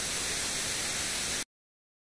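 Television static hiss, a sound effect under a snowy-screen logo animation. It lasts about a second and a half, then cuts off suddenly.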